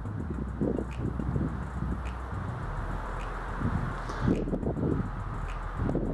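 Wind buffeting the microphone in low rumbling gusts, with leaves rustling in the breeze.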